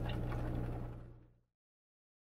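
Tour bus generator's steady low buzz under the recording, fading out a little over a second in.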